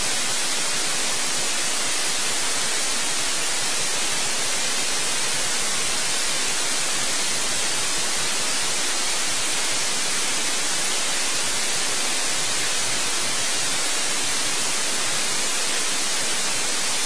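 Steady loud hiss of static with no other sound. It is even and unchanging, brightest at the top end.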